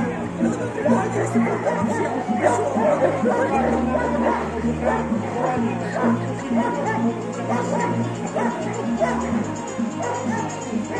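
A dog barking repeatedly over loudspeaker music with a steady, stepping bass line, with crowd voices in the background.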